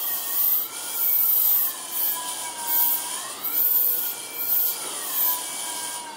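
Oertli Faros phacoemulsification machine at work while cataract nucleus pieces are held and emulsified. Its tone slides up and down in pitch in slow waves, a rise and fall every couple of seconds, following the aspiration vacuum. Under it runs a steady rasping hiss, with short high hissing pulses on and off.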